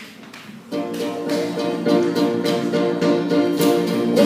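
Acoustic guitar strumming chords in a steady rhythm, starting under a second in: the opening of the song before the vocal comes in.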